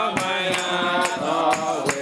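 A group of voices singing a praise song together, with hand clapping about twice a second keeping the beat.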